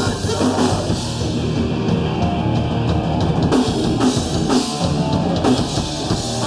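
Hardcore punk band playing live at full volume: electric guitars, bass guitar and a pounding drum kit.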